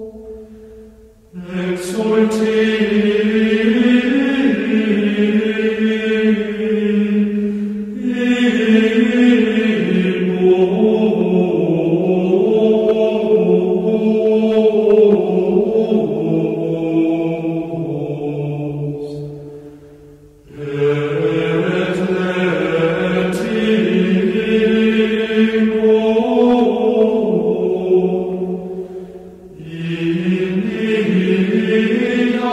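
Slow devotional chant sung in long, held phrases with gently bending pitch. It breaks off briefly about a second in and again about twenty seconds in, and fades near the end.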